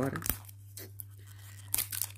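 Crinkly plastic wrapper of a blind-bag toy being torn open by hand: a few faint crackles, then louder crinkling and tearing near the end.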